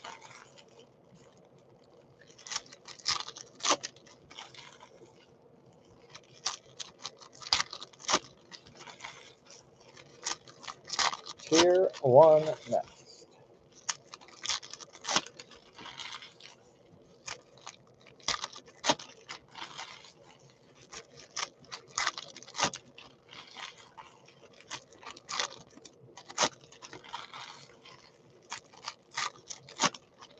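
Foil trading-card pack wrappers crinkling and tearing as packs are ripped open, with cards shuffled and tapped into a stack in short irregular clusters of crackles. A short wordless vocal sound midway is the loudest moment.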